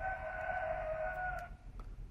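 A rooster crowing once, one long rough call that ends about a second and a half in.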